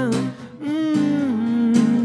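A man humming a drawn-out "mm-hmm" over an acoustic guitar. The hummed note breaks briefly about half a second in, then is held, stepping down in pitch and rising again near the end.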